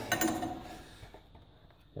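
Wrench turning the screw of a ball joint separator: a few light metal clinks in the first half second, then sparse faint ticks fading almost to nothing.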